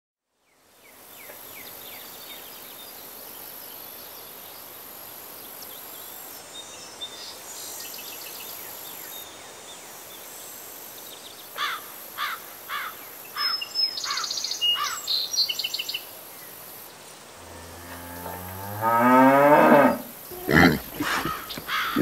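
A cow mooing: one long, low call of about two and a half seconds near the end, rising and then falling in pitch. Before it, a run of short high chirps sounds over a steady hiss, and more short calls follow the moo.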